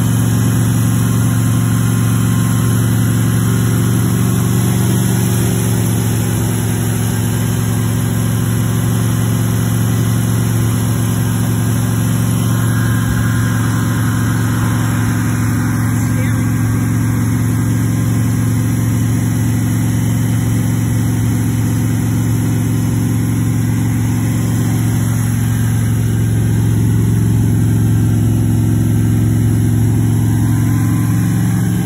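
Freshly built Chevrolet V8 in a 1966 Corvette Stingray running steadily on its first start in seven years, at an even, raised speed.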